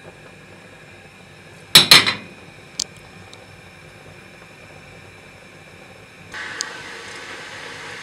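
A short, loud clatter of dishes as tomato quarters are tipped off a small plate into a steel pot of borscht, with one smaller click a second later. A faint steady hiss comes in near the end.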